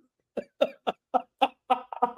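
A man laughing in a quick run of about seven short, evenly spaced bursts, roughly four a second.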